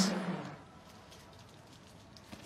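Near silence: faint hush of a tennis arena's ambience, after the preceding sound fades out within the first half second, with a few soft ticks.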